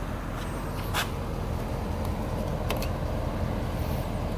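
Pickup truck engine idling steadily, with a single sharp click about a second in.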